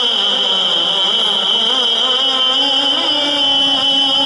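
A man's solo voice recites a naat, an Urdu devotional poem, as unaccompanied chanting through a microphone and PA. He draws long held notes that waver and turn in pitch.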